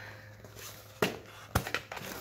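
Cardboard mailer box being handled and opened: a few sharp taps and knocks of the cardboard, starting about a second in.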